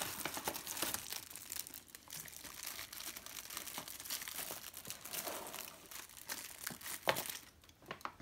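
Plastic packaging crinkling as it is handled: a thin plastic bag being rummaged and plastic-wrapped biscuit packs pulled out, with continuous crackling and rustling that eases briefly near the end.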